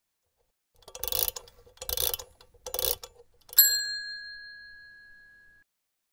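Logo sting sound effect: three short whooshing hits about a second apart, then one bright bell-like ding that rings out and fades over about two seconds.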